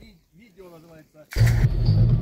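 Faint voices, then about 1.3 s in the sound cuts suddenly to the loud, steady noise of a car driving on a dirt track, heard from inside the cabin: a low engine hum over road rumble.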